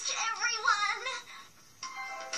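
Cartoon soundtrack played through a television speaker: a character's voice for about the first second, then a short dip, and music with held notes coming in near the end.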